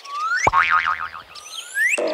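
Cartoon sound effects: a rising whistle-like glide, a wobbling boing with a deep downward drop under it about half a second in, then a second rising glide near the end.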